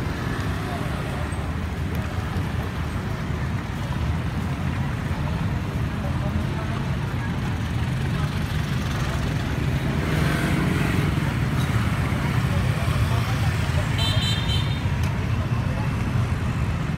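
Steady outdoor street and traffic noise with background voices. About two seconds before the end comes a short, high-pitched beep.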